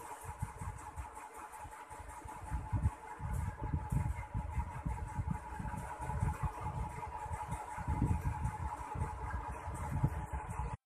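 A steady mechanical hum with a constant tone, under an irregular low rumble that rises and falls throughout.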